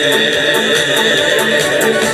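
Romanian folk music through a stage sound system: an instrumental passage with a steady beat under one long held high note, between sung verses.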